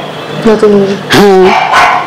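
A woman's voice saying a couple of short words in Bengali, over a steady low hum.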